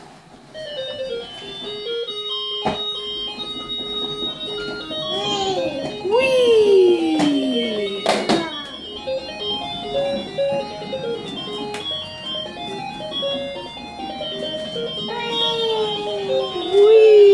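Tinny electronic jingle playing from a child's ride-on toy car's button sound box, a stepped melody running throughout, with sliding voice-like sounds over it and a couple of sharp clicks.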